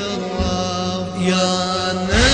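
Shia mourning chant (latmiya) music about Karbala: a held, chanted vocal note over a steady drone, with a deep low thump about half a second in.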